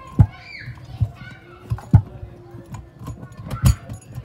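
Four sharp metal clicks and knocks as the parts of an Alarm Lock Trilogy keypad lever lock are handled and fitted back together. Faint children's voices in the background.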